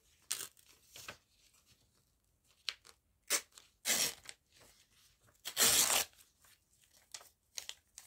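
Magazine paper being torn by hand in several short rips, the longest and loudest a little before six seconds in.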